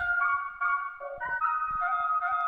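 A hip-hop backing beat starting up: a melody of clear, held high notes stepping up and down in pitch.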